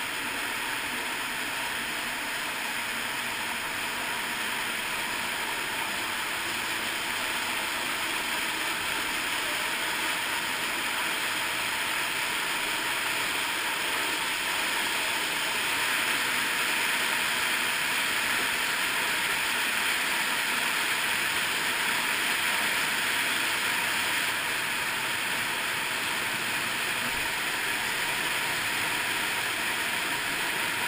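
Underground stream and waterfall rushing steadily, a little louder in the middle stretch.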